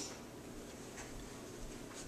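Background music cuts off abruptly right at the start, leaving quiet room tone with a few faint light ticks and rustles.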